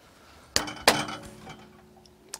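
Two sharp metallic knocks on a heavy welded steel plate, about a third of a second apart, the second louder. A clear ringing tone follows and dies away.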